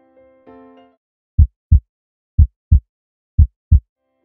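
A soft electric-piano phrase dies away, then three loud, low double thumps about a second apart, a lub-dub heartbeat pattern like a heartbeat sound effect in an intro jingle.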